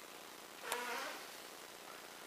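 Steady faint hiss of room tone. About three-quarters of a second in there is a single short, faint voice sound, under half a second long, with a slight falling pitch.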